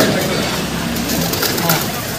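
A bird calling over steady outdoor background noise.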